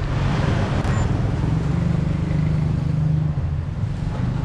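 Street traffic with a motor vehicle's engine running close by, a steady low hum that is strongest in the middle.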